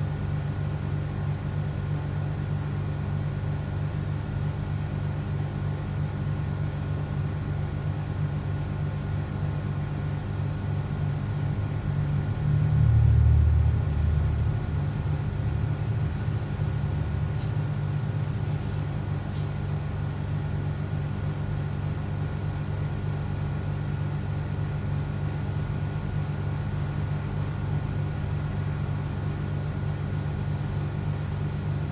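Steady low rumble and hum, which swells briefly louder about thirteen seconds in and then settles back.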